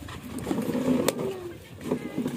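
Plastic food-container lid being pried open, with one sharp click about a second in as it comes free, over a steady background noise.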